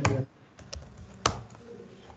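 Computer keyboard keys pressed a few times, as separate keystrokes with one sharper, louder one a little past the middle.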